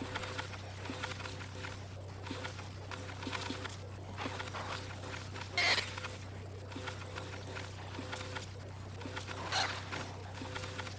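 Sparse free improvisation on a contact-miked snare drum with live electronic processing: a low steady hum under small scattered taps on the drum, with two brief louder sounds, one about five and a half seconds in and one near the end.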